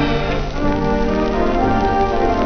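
Instrumental passage of a dance band record with theatre organ, played from a 78 rpm shellac disc on a Garrard 401 turntable, with the disc's surface crackle and hiss under the music.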